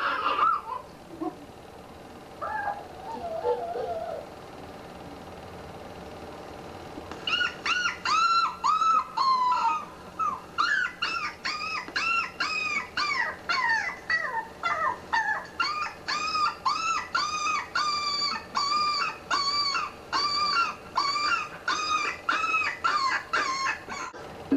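A small dog whining: a long run of short, high, rising-and-falling whimpers, about one to two a second, starting about seven seconds in.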